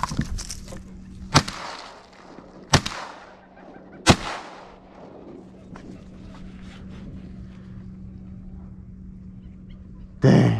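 Three shotgun shots about a second and a half apart, each trailing off in a short echo across open marsh, fired at a flying teal.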